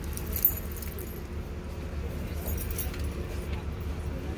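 Outdoor ambience: a steady low rumble on the microphone, with a sharp click about half a second in and some faint light, high jingling.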